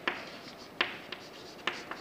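Chalk writing on a green chalkboard: about four sharp taps as the chalk meets the board, with faint strokes between them.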